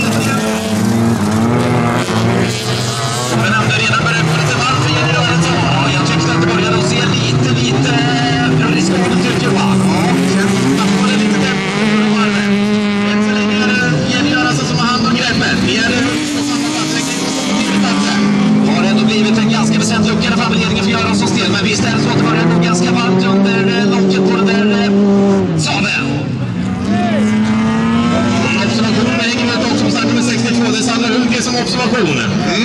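Several bilcross (folkrace) cars racing on a dirt track, their engines revving up and falling away over and over, with sudden drops in pitch where a driver shifts or lifts off.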